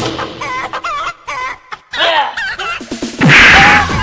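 Chicken clucking in quick repeated wavy calls, with a short loud rushing burst near the end.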